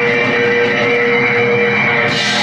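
Live blues band playing, electric guitars to the fore over keyboard and drums, with long held notes.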